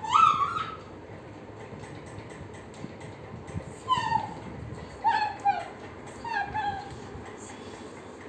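A toddler's high-pitched squealing: one loud rising squeal right at the start, then several shorter falling squeals between about four and seven seconds in.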